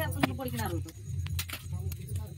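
Several people talking, with a few sharp clicks and clinks from hands at work and a steady low hum underneath.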